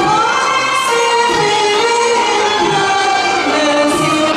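Live Middle Eastern music: singing over a band with hand drums and frame drum, the drum strokes keeping a steady beat.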